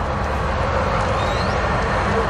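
Steady motor-vehicle rumble and road hiss, slowly growing louder, with a faint brief rising whistle in the middle.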